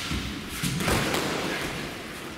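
Thuds of blows landing on padded protective armour in a full-contact Nippon Kempo exchange, with a cluster of heavier impacts about a second in.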